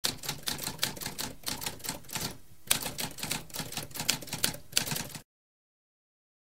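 Typewriter typing: a fast run of key strikes with a short pause about halfway through. It stops suddenly a little after five seconds.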